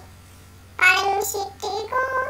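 A child's high-pitched voice, starting about a second in after a brief pause.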